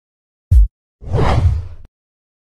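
Intro-animation sound effects: a short, loud, low thump about half a second in, then a whoosh lasting just under a second.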